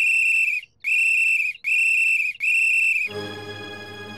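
A woman whistling with her fingers in her mouth: four loud, high-pitched blasts of about two-thirds of a second each, in quick succession. Music comes in just after the fourth blast, about three seconds in.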